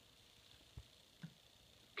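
Near silence: room tone, with a soft low thump about a second in and a brief faint sound just after.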